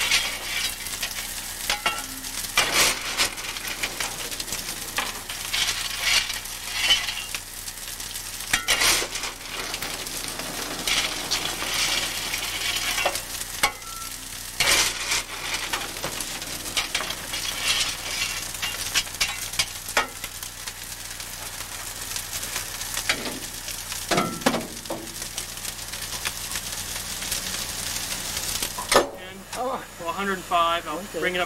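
Narrow-gauge steam locomotive cab at the firebox: a steady hiss and crackle, broken by frequent sharp metal clanks and knocks as the fire is banked with coal and water for the night.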